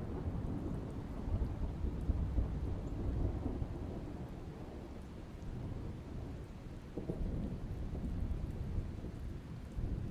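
Soundtrack of a played film: a continuous low rumble with a hiss above it, with no speech.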